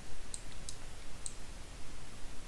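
Three or four light, sharp clicks from a computer mouse and keyboard as a value is entered into a software dialog.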